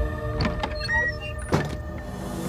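Film soundtrack sound design: a sustained dark musical drone thins out into a few short swishes and a sharp hit about one and a half seconds in, marking a dramatic transition.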